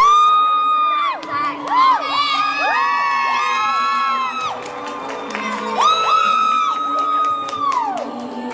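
Spectators cheering with long, high-pitched whoops that overlap, over recorded music: one at the start, a cluster about two to four seconds in, and another near the end.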